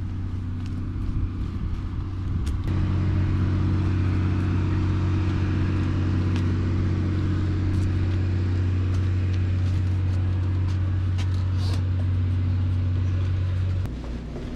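Car engine and road noise heard from inside the cabin while driving, a steady hum that gets louder about two and a half seconds in and drops away near the end.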